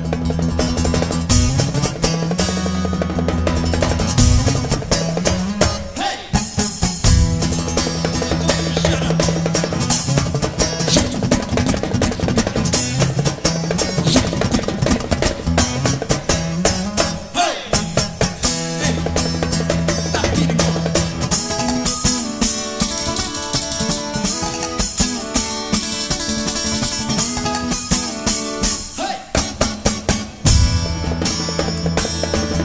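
Live band playing a song: acoustic guitar, upright bass notes and busy drumming on a wearable strap-on drum rig. A faster guitar melody comes to the fore in the last third.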